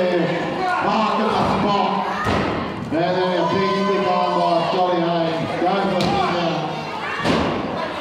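Bodies thudding onto a wrestling ring's canvas, about three times (near two seconds in, at six seconds and the loudest just after seven), with voices shouting throughout.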